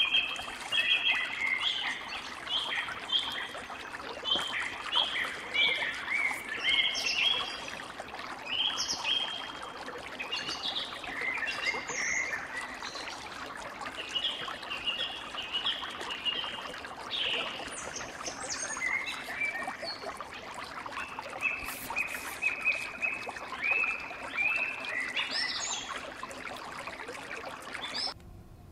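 A shallow stream running over rocks, a steady trickling rush, with birds singing repeated short chirping phrases over it.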